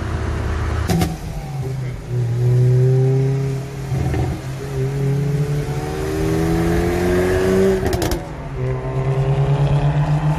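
Car engine accelerating hard, heard from inside the cabin. Its pitch climbs steadily and breaks off sharply at gear changes three times, then gives a fast pulsing sound near the end.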